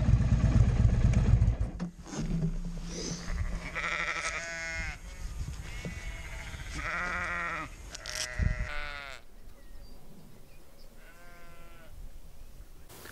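A motorcycle engine running loudly over the first couple of seconds, then dropping away. Sheep bleating after that: three or four separate drawn-out bleats, the last one near the end.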